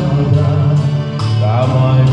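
A man singing karaoke into a microphone over a recorded backing track with a steady beat.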